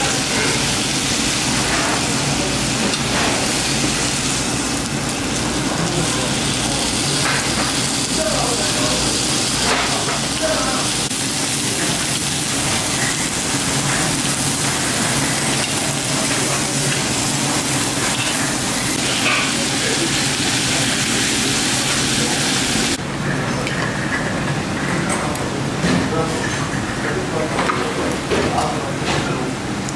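Marinated beef ribs sizzling steadily on a slotted grill plate over charcoal, with short clicks of metal tongs and scissors working the meat. About 23 seconds in, the sizzle cuts off abruptly, leaving a quieter background.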